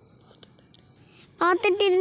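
Faint background noise, then a high-pitched voice speaking one long, drawn-out word starting about two-thirds of the way in.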